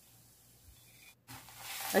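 Near silence for about a second, then, after a brief dropout, chopped nuts being stirred with a spatula through date paste in a nonstick pan on the heat: a scraping, sizzling rustle that grows louder near the end.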